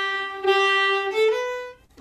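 Solo fiddle bowing a long held note, then moving up to higher notes a little over a second in and fading out just before the end, closing the tune.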